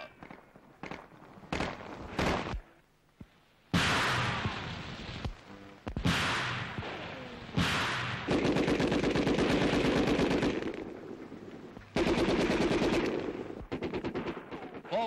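Gunfire: several sudden single reports, each dying away in a ringing tail. A long burst of rapid automatic machine-gun fire follows, then a shorter burst near the end.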